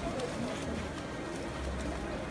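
Avalanches of powder snow pouring down rock cliffs: a steady rushing noise, with a low rumble growing stronger in the second half, and faint voices under it.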